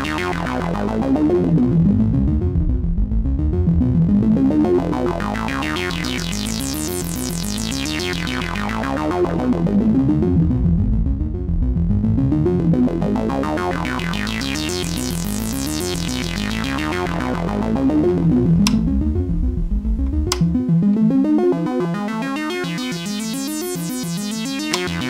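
Sequenced modular synthesizer patch voiced by the Corsynth VC LFO running as an audio-rate oscillator, its sine, saw and octave-split pulse waves through a filter, playing a repeating note sequence while a slow LFO sweeps the filter open and closed about every eight seconds. Two sharp clicks sound about three-quarters of the way through, and the low bass layer drops out just after.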